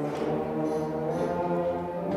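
A school concert band playing held chords, brass to the fore, with the harmony changing a couple of times.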